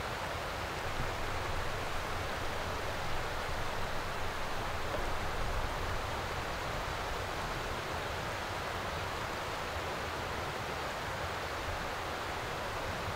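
Steady outdoor ambience: an even rushing noise with a low rumble beneath, unchanging throughout.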